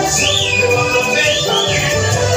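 Live church praise-and-worship music with a steady bass line. A high sliding tone rises and falls twice over the band.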